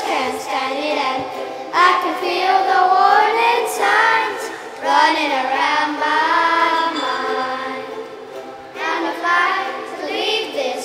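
Children's choir singing a pop song, accompanied by strummed ukuleles and cajon, the singing coming in phrases with short breaks between them.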